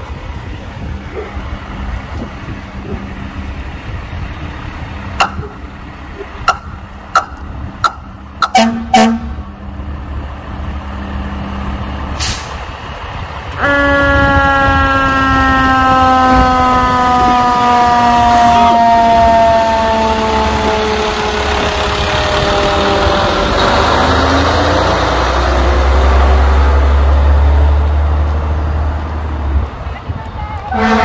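Parade vehicles give a string of short horn toots. Then a fire engine sounds a long, loud warning tone that slowly falls in pitch over about ten seconds, followed by the heavy low rumble of the truck's engine as it passes.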